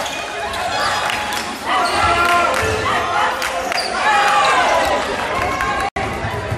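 A basketball bouncing on a hardwood gym court during live play, with players' voices calling out.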